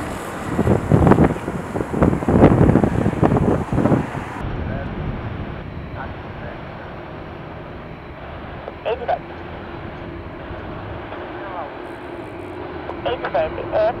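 Wind buffeting the microphone for the first few seconds, then the steady low running of a Boeing 747-8F's four GEnx jet engines at taxi power as the freighter rolls past, with a steady engine whine coming in about halfway through.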